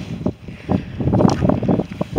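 Wind buffeting the microphone of a hand-held camera during a walk: an uneven low rumble that rises and falls in gusts.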